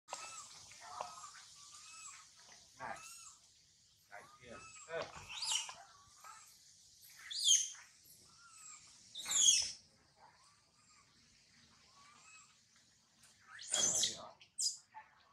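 Animal calls: a run of short chirping calls, with louder shrill cries about five and a half, seven and a half and nine and a half seconds in and again near the end, over a steady high hiss.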